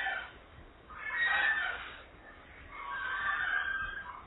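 Two faint, drawn-out animal calls in the background, each about a second long, the first about a second in and the second near the end.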